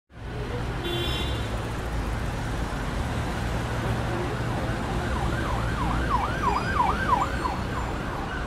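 City street traffic noise, a steady rumble and hiss. From about five seconds in, an emergency vehicle siren is heard in yelp mode, its pitch sweeping up and down quickly about three times a second.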